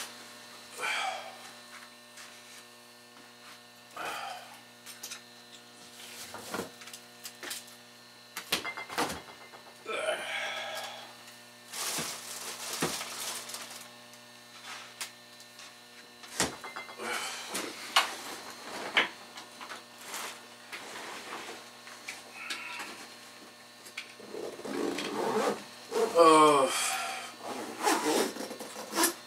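Clicks, knocks and rustling of a bag being packed and handled, over a steady electrical hum, with a few brief murmured words.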